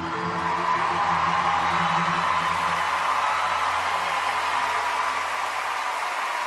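Studio audience cheering and applauding, with whoops over an even roar. The last held notes of the song fade out underneath during the first half.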